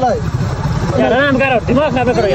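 Steady low wind rumble buffeting the microphone of someone riding in the open along a road, with men's voices talking over it.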